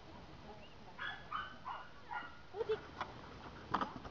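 Dog barking in short, high yaps, several in quick succession about a second in, then a few sharp clicks near the end.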